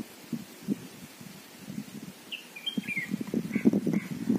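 A small bird calls a few short, quick chirps starting about halfway in, over low knocks and rustling close by that grow louder near the end.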